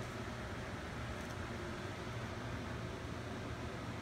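Steady low hum with a faint hiss: room background noise, with one faint tick about a second in.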